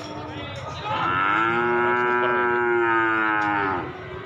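A yearling calf mooing: one long moo of about three seconds, starting about a second in, holding one pitch and dropping away at the end.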